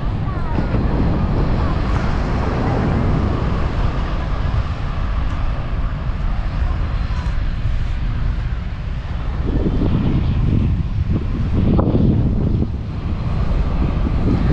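Wind buffeting the camera microphone: a loud, steady low rumble that swells about ten to twelve seconds in.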